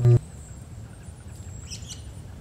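A short, loud, low-pitched sound at the very start, followed by faint high chirps near the end over a steady low background hiss.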